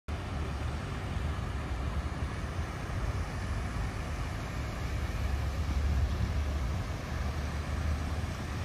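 Steady low rumble and hiss of outdoor city background noise, with no distinct events.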